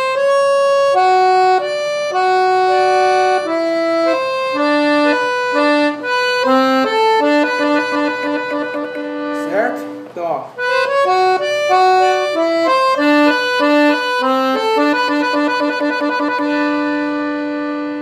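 Piano accordion playing a solo melody on its right-hand keys in the musette register, notes held and stepping up and down, with a brief break in the playing about ten seconds in.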